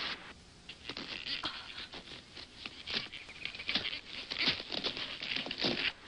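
Footsteps scrambling over loose rock and gravel: an irregular run of short crunches and clicks that starts about a second in and grows denser and louder toward the end.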